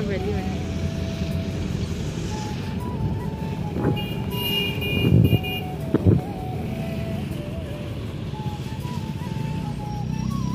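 Background music with a slow, held melody over the steady rumble of a moving vehicle in road traffic. A brief high tone sounds about four seconds in, and a few thumps come between four and six seconds.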